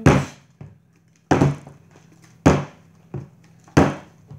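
A plastic bottle part-filled with juice thudding down onto a wooden tabletop four times, about a second apart, as it is flipped and landed.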